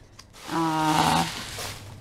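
A voice holding one low pitch for under a second, with breath noise over it, starting about half a second in.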